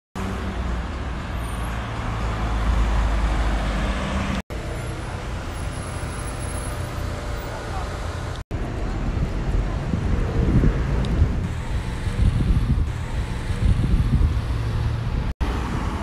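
City road traffic: cars and vans driving past on a wide multi-lane avenue, a continuous rumble of engines and tyres that grows louder in the second half. The sound drops out for an instant three times.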